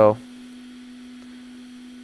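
A steady low electrical hum, one unchanging tone.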